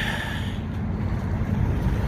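Wind blowing on the microphone: a steady low rumble with hiss.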